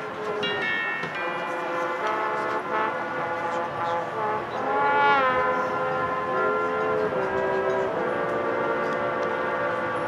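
Marching band brass holding loud sustained chords that change every second or two, with a chord that bends up in pitch and falls back, swelling to its loudest about halfway through.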